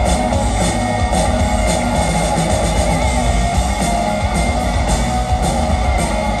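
Hard rock band playing live in a theatre, recorded on a phone from the audience: distorted electric guitars over bass and drums, with cymbals hit about every half second.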